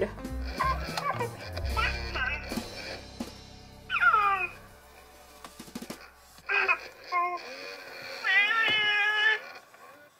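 Baby Alive Real as Can Be doll's recorded baby voice making short baby cries and coos: a falling whine about four seconds in, a few brief sounds later, and a longer wavering cry near the end. Soft background music runs underneath and fades out partway through.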